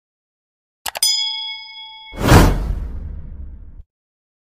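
Subscribe-button animation sound effects: two quick mouse clicks about a second in, then a bright bell ding ringing for about a second, then a louder whoosh with a low rumble that fades out near the end.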